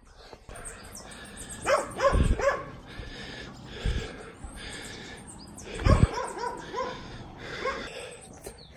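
A dog barking and yipping in two short bursts of calls, about two seconds in and again around six seconds. Three heavy low thumps sound under the calls.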